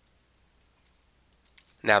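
A few faint, scattered computer clicks, then a man's voice starts speaking near the end.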